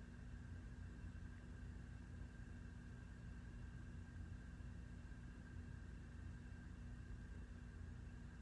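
Quiet room tone: a steady low hum with a faint, steady high-pitched whine above it.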